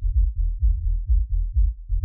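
House track's kick drum and sub-bass playing through a low-pass filter so that only the low end is heard: a steady, rhythmic run of deep thumps a few times a second, with nothing above the bass range.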